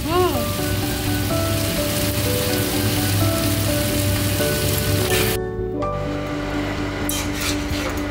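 Chicken and sliced vegetables sizzling in a hot wok as they are stir-fried with a metal spatula, over steady background music. The sizzle drops away sharply about five seconds in.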